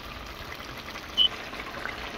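Pot of cabbage simmering in its own liquid, a steady bubbling hiss as the sauce reduces. A short high-pitched tone sounds once, about a second in.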